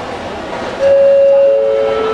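Airport public-address chime: a loud steady tone about a second in, joined half a second later by a lower tone, the two-note ding-dong that signals a flight announcement is coming. Steady hall noise lies beneath it.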